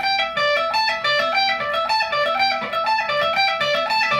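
Electric guitar playing a fast lead lick of single notes that cycles through the same short pattern again and again, over a steady low note.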